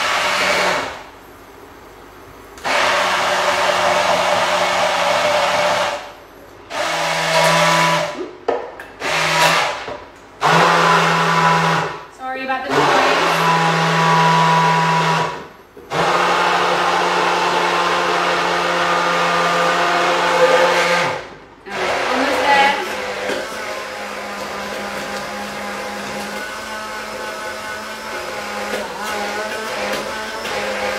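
Electric hand (immersion) blender whirring as it blends a thick tahini dressing in a tall glass jar. It is switched on and off repeatedly in runs of a second to several seconds, then runs more quietly and steadily through the last several seconds.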